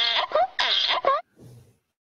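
A donkey braying, a run of harsh hee-haw calls that stops about a second in.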